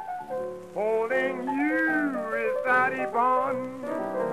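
Prewar blues from a 1932 78 rpm record: a man singing with his own piano accompaniment. The voice holds and bends long notes over steady piano chords.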